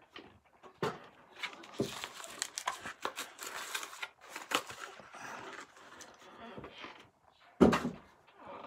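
Plastic and cardboard packaging of a diecast model car crinkling and tearing as it is opened by hand, with scattered clicks and a short, louder knock near the end.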